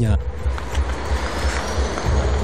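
Road traffic noise: a motor vehicle passing with a steady rushing hiss and a faint rising whine in the second half.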